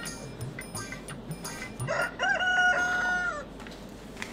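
Background music with a steady beat, then, about two seconds in, one loud, long pitched call lasting about a second and a half that rises at the start, holds and drops away at the end, like an animal's cry.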